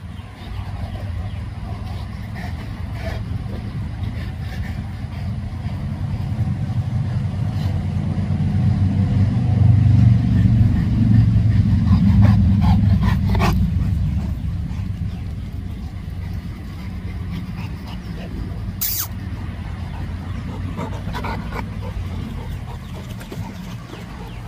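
A low rumble that builds to a peak about halfway through and then fades, with a few short clicks at its loudest point.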